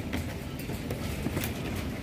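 Steady background hum of a supermarket, with a few faint light taps and rustles from a cardboard product box being handled.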